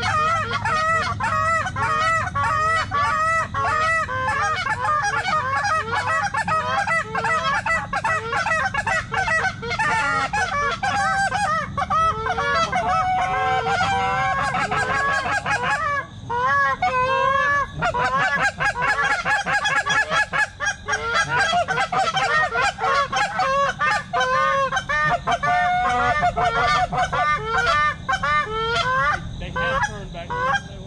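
A flock of Canada geese honking continuously, many calls overlapping into a dense chorus, with a brief lull about halfway through.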